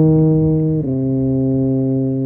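E-flat tuba playing a long sustained note, then slurring down to a lower note a little under a second in and holding it.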